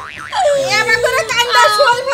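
A woman wailing in grief, a drawn-out sing-song cry that starts about half a second in, its pitch falling slowly and then wavering.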